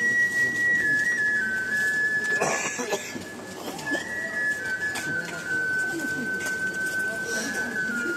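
A steady, thin, high whistling tone that slowly steps lower in pitch, over low cooing calls, with a brief rushing noise about two and a half seconds in.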